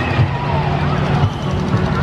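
Amusement park ambience: a steady low rumble of ride machinery with distant voices mixed in.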